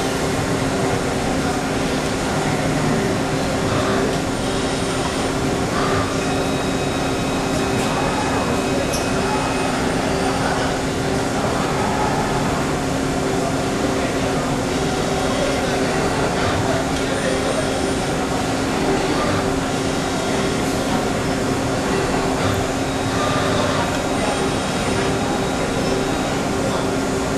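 Horn Metric 45EMR all-electric CNC tube bender running through its bending cycle, a steady hum with no sudden knocks, over indistinct background voices.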